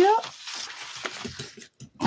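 Sheets of paper, among them a large sheet of soft, blotting-paper-like pink paper, rustling and sliding over a cutting mat as they are handled, with a few light taps. It is preceded right at the start by a brief, louder rising pitched sound.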